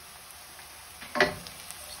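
Chopped onion and garlic sizzling quietly in oil and butter in a frying pan, with one sharp scrape of a wooden spoon stirring across the pan about a second in.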